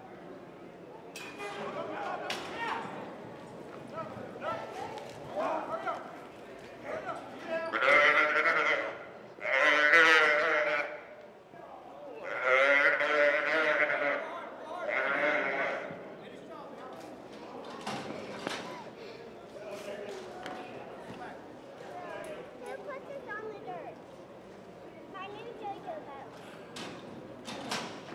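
A roped calf bawling as it is thrown and tied: four loud, wavering calls in quick succession near the middle.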